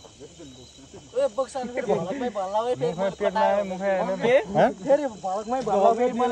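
People talking from about a second in, over a steady high chirr of crickets.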